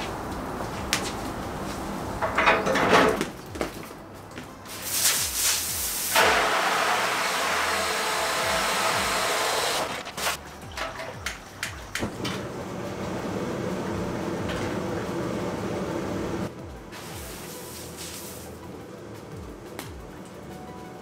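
Water from a garden hose rushing into a galvanized steel wash tub, loud and steady for about four seconds in the middle, then quieter. Before it come scattered knocks and clanks of metal fittings as the burner's gas hose is handled and connected.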